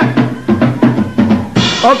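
A drum kit's drums struck one after another, about five strokes, with the low drums ringing between hits.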